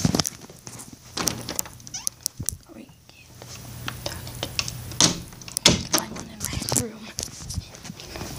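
Handling noise from a handheld phone being carried around: scattered sharp knocks and rubbing against the microphone.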